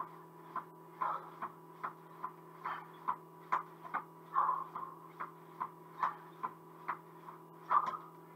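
Rhythmic soft taps of feet landing on a foam mat during mountain climbers, about two or three a second, over a steady low hum.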